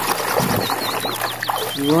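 Water splashing and sloshing in a plastic tub as a hand swishes a toy car through it, with a knock about half a second in. Over it, a small bird chirps in a quick run of short high notes from about half a second on.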